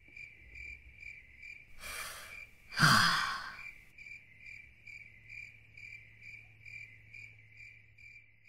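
Crickets chirping steadily, about two and a half chirps a second, as a night ambience. About two seconds in a character breathes in, then lets out a louder sigh about a second later.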